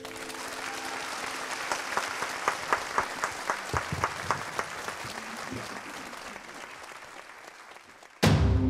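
Audience applauding after a song, with a stretch of rhythmic clapping in unison at about four claps a second in the middle; the applause then fades away.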